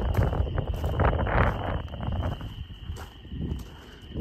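Footsteps crunching on gravel ballast, irregular and close, over a low rumble of wind on the microphone. The steps fade out about two and a half seconds in.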